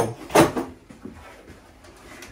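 A single short knock about half a second in, followed by low, steady room sound.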